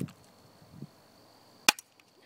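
A Stinger P9T pump-action airsoft pistol firing once: a single sharp snap near the end, followed straight after by a fainter click.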